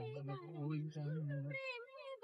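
Singing voices holding long notes: a low voice under a higher, wavering line. About one and a half seconds in, the low voice stops and a high, wavering note carries on alone.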